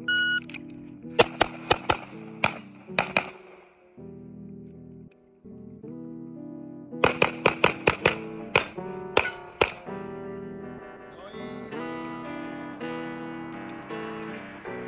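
A shot-timer beep, then a fast string of handgun shots, a pause of about three seconds, and a second fast string of shots. Acoustic guitar background music plays under it throughout.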